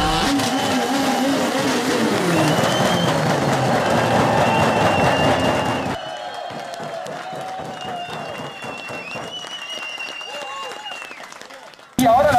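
People clapping and shouting while a Hyundai rally car's engine runs. About six seconds in the sound drops to quieter cheering and voices.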